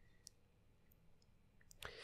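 Near silence: room tone, with two faint clicks, one shortly after the start and one near the end.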